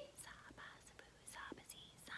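Near silence: room tone with a few faint, breathy mouth and breath sounds.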